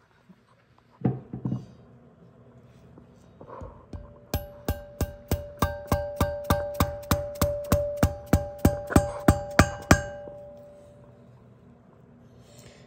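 Valve-seal installer tool being tapped to drive a valve stem seal onto the valve guide of a Porsche 997 cylinder head: a run of quick, even metallic taps, about four a second, each with a ringing tone. The taps grow louder toward the end and then stop.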